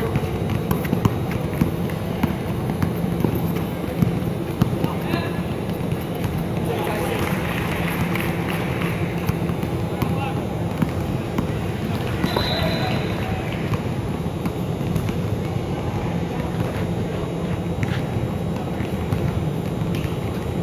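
Ambience of a basketball game in a large indoor gym: a basketball bouncing on the court, scattered knocks, and players and spectators calling out over a steady hubbub of voices.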